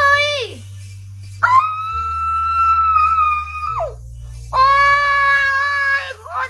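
A woman's long, high-pitched excited squeals, three in a row. The middle one is held for about two seconds and slides down at the end. Background music with a steady bass runs underneath.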